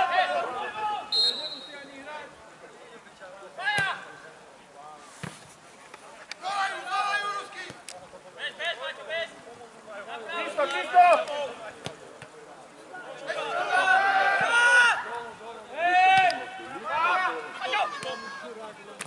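Voices shouting and calling out across a football pitch during play, in short separate shouts, with a few short sharp knocks among them, such as a ball being kicked.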